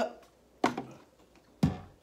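Two short knocks about a second apart, the second louder and duller, as the borrowed aquarium light is handled and set in place on the tank.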